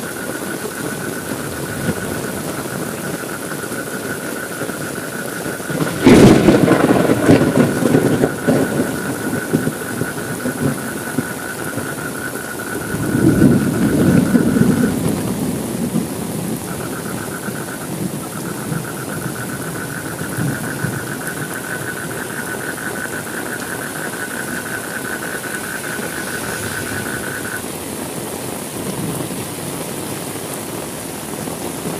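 Steady heavy rain with thunder: a sharp crack about six seconds in that rolls on for about three seconds, then a second, softer rumble about thirteen seconds in. A steady high tone runs under the rain, breaking off briefly in the middle and stopping near the end.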